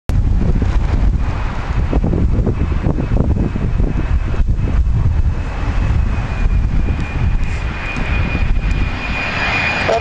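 Twin-engine jet airliner on final approach, its engines running with a steady high whine over a deep rumble; the whine dips slightly in pitch near the end as the aircraft comes overhead.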